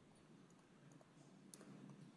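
Near silence with a few faint clicks of a stylus tapping and writing on a tablet screen, the clearest about one and a half seconds in.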